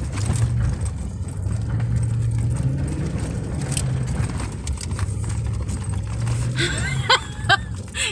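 Vehicle engine and drivetrain heard from inside the cabin as it drives slowly along a muddy dirt trail: a steady low drone that rises and falls a little with the throttle, with tyre and road noise underneath.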